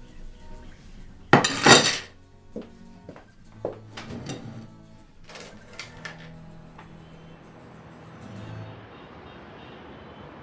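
Coins clinking and clattering on a wooden table as they are counted out and stacked, with the loudest clatter about a second and a half in and several sharper clinks over the next few seconds. Quiet background music runs underneath.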